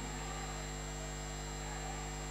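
Steady electrical hum with an even hiss underneath, unchanging throughout, with no music or voice.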